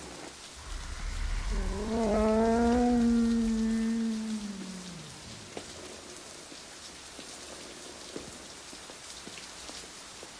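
Steady heavy rain, with one long low moan from the dying Godzilla starting about a second and a half in, a deep rumble beneath its start. The moan sags in pitch and fades out around five seconds in, leaving only the rain.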